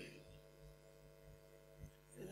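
Near silence: room tone with a low, steady hum.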